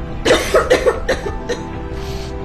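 A person coughing, a quick run of four or five coughs over about a second and a half, over soft background music.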